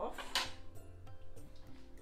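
Background music with steady held notes, after a spoken word right at the start.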